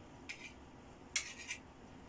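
Fork scraping against a plate as a bite of cake is cut off: a brief scrape, then a longer one about a second in.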